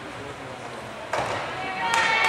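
Crowd chatter echoing in a gymnastics hall, with a sudden thud about halfway through from a gymnast landing on the balance beam.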